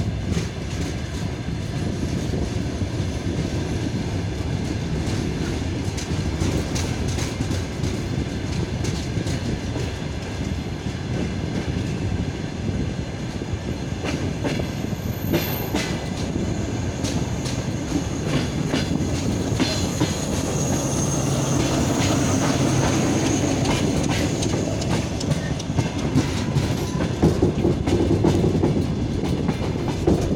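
Train wheels clicking steadily over rail joints as a train rolls through, over a continuous rumble. From about twenty seconds in, the low drone of a diesel locomotive's engine grows louder as it approaches.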